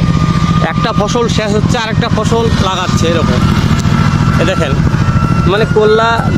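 A small engine running steadily with a low rumble, while people talk over it.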